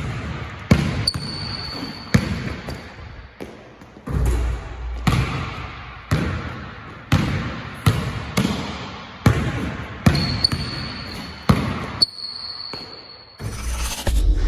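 Basketball dribbled hard on a hardwood gym floor, about one bounce a second with uneven gaps, each bounce echoing in the hall. A thin high squeak sounds twice, for about a second each time.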